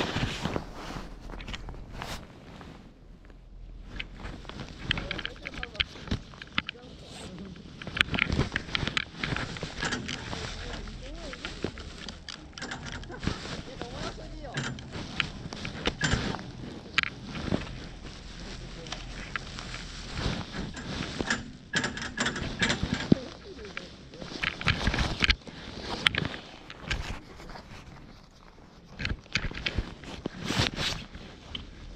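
Voices over a low, steady rumble during a ski chairlift ride, broken by many irregular sharp clicks, knocks and rustles.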